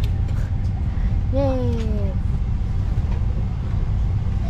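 Steady low rumble of an airliner cabin, with one brief falling vocal exclamation about a second and a half in.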